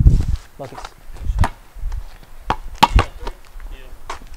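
A basketball knocking against the hoop and bouncing on a concrete driveway after a made jump shot: a few sharp separate thuds, the loudest near three seconds in.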